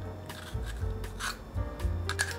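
Y-shaped vegetable peeler scraping the skin off a water chestnut in a few short strokes, with soft background music under it.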